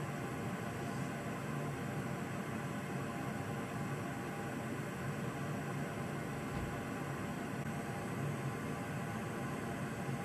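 Steady low hiss with a faint hum underneath, unchanging and without any distinct clicks or knocks.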